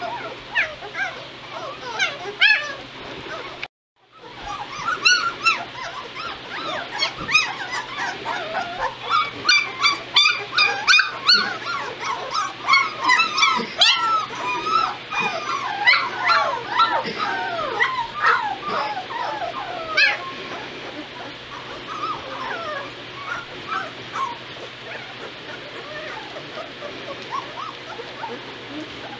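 A litter of two-week-old White Shepherd puppies whimpering and yipping together, with many short cries rising and falling in pitch and overlapping. The cries are busiest through the middle and thin out near the end.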